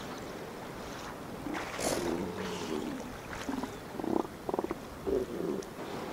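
Juvenile northern elephant seals calling: a series of short, low guttural calls from about a second in, one of them a rapid pulsed rattle about four and a half seconds in.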